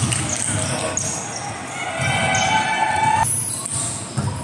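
Indoor volleyball play in a large, echoing sports hall: the ball thudding off hands and floor, with players' voices.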